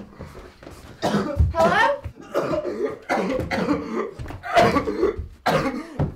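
A person coughing over and over in several separate bouts, with strained voice sounds mixed in: a sick person's coughing fit.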